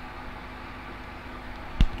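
Steady low background hiss of room noise, with one sharp click near the end.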